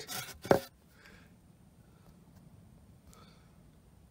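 Fingers rubbing a silver sixpence against a foam sheet, a short scratchy rub that stops under a second in, with a brief sharp squeak about half a second in; then faint room tone.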